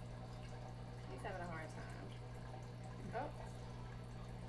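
A running aquarium: a steady low hum with a faint water trickle. A voice murmurs faintly twice.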